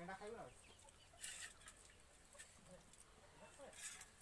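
Faint clucking of a domestic hen, with a short bit of voice at the start and a couple of soft scrapes.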